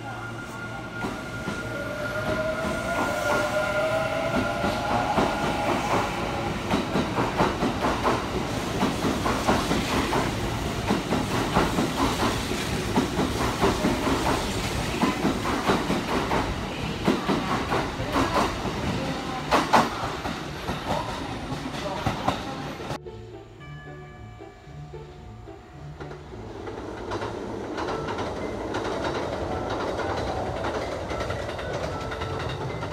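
Electric train moving out along a station platform: a motor whine glides up in pitch as it gathers speed, then the wheels clatter over the rail joints as the cars go by faster. About two-thirds of the way through the sound cuts to a quieter outdoor scene, and the sound of a second train passing in the distance builds near the end.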